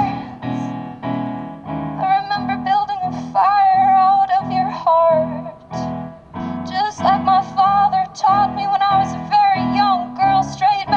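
Live music: an electric keyboard playing repeated chords under a woman singing long, wavering notes.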